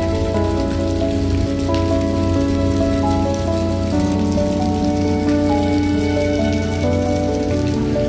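Water splashing from a small fountain jet falling back into a pool, a steady hiss, under background music with slow, held notes.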